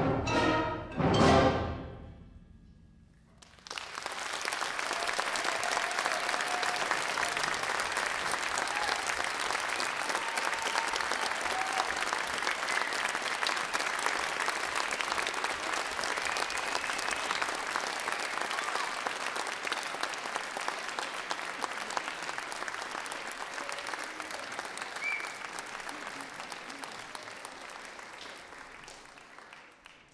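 A middle school concert band plays its final chord, which rings and dies away in the hall within the first three seconds. After a brief hush the audience bursts into steady applause that goes on for over twenty seconds and gradually tails off near the end.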